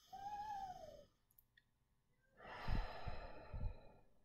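A deep breath sighed out, the air rushing and buffeting the microphone, in the second half. Earlier, about the first second, a short high call that rises and falls in pitch.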